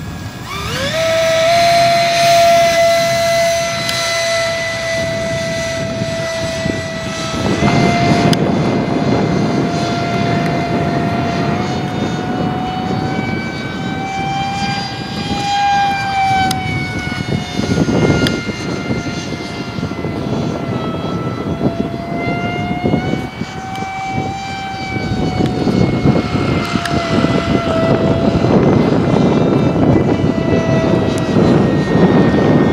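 Electric ducted fan of a Freewing F-35 RC jet spooling up sharply about half a second in for the hand launch, then a steady high-pitched whine that drifts slightly up and down in pitch as the model flies. Gusts of wind noise come and go on the microphone.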